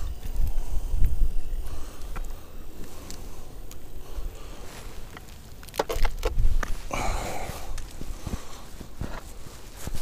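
Boots walking on lake ice, with a few sharp crunches or clicks about six seconds in and a short rustle about a second later. A low rumble sits on the microphone in the first second or so.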